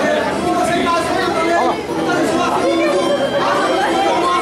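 Only speech: a man talking into a handheld microphone, his voice carried through a hall's sound system.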